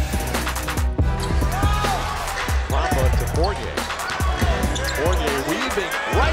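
Basketball game sound from a hardwood court: a ball bouncing and many short sneaker squeaks from about a second and a half in, over background music with a steady beat.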